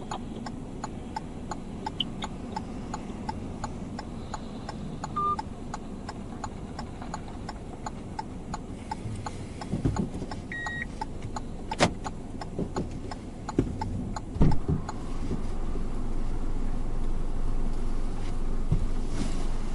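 A car's indicator flasher ticking steadily, about three clicks a second, over the low hum of the idling engine inside the cabin. Near the end come a few knocks and the background noise rises as a car door is opened.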